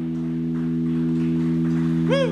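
Live rock band holding the final chord of a song: a steady sustained chord from the amplified instruments rings on after the closing hit, swelling slightly.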